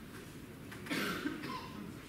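A single cough about a second in, short and sharp, against low room noise.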